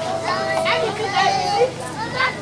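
Young children's high-pitched voices chattering and calling out as they play, with one drawn-out call in the first second.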